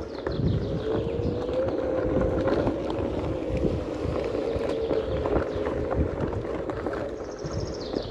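Onewheel electric board rolling over a dirt path: its hub motor gives a steady whine that rises a little in pitch over the first couple of seconds and then holds, over the rumble and crackle of the tyre on the ground and wind buffeting the microphone.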